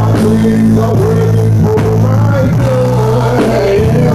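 Live gospel music: a band plays sustained keyboard chords with bass, and a man sings a long, wavering melodic line over it.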